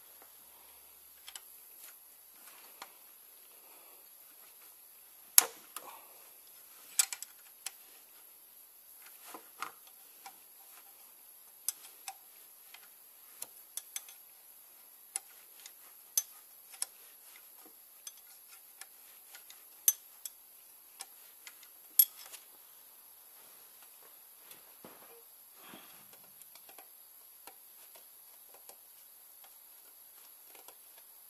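Irregular sharp metallic clicks and clinks of a spanner and loose metal parts as the timing-belt tensioner is undone, with the loudest knocks about five, seven, twenty and twenty-two seconds in.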